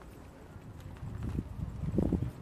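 Walking with a handheld camera: a few irregular muffled low thuds, footsteps and handling knocks, in the second half.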